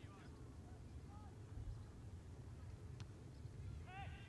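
Distant shouts of soccer players calling across an open field, over a low steady rumble. One sharp knock about three seconds in.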